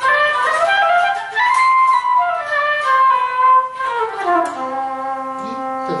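Electric guitar with a synthesized, wind-instrument-like tone playing a C major scale over two octaves from middle C in smooth, sustained single notes. The scale climbs to the top and back down, ending on a held low note.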